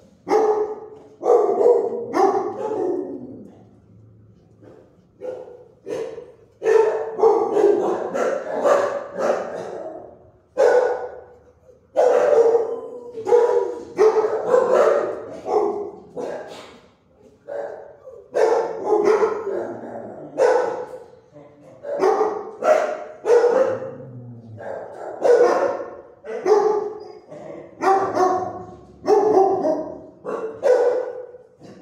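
Dogs in a shelter kennel block barking repeatedly, bark after bark with short trailing echoes, easing off briefly about four seconds in before starting up again.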